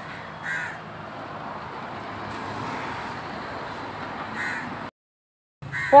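Crow cawing twice, once about half a second in and again near the end, over a steady wash of street traffic noise. The sound cuts out completely for a moment just before the end.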